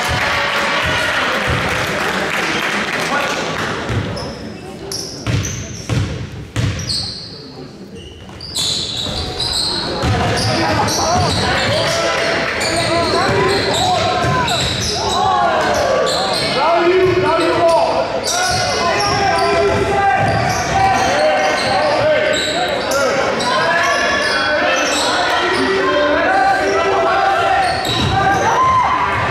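Basketball game in a gym: a burst of crowd cheering at the start, then a ball bouncing on the gym floor. From about eight seconds in, sneakers squeak sharply and players and spectators shout until the end.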